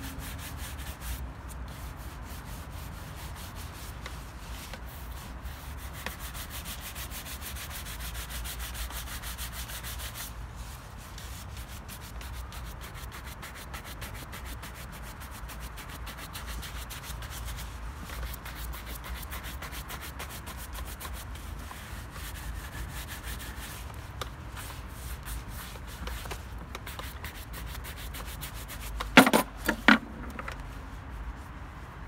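A shoe brush worked in fast back-and-forth strokes over a waxed black leather shoe, buffing the polish: a steady, rapid rubbing and swishing. About a second before the end come two sharp knocks.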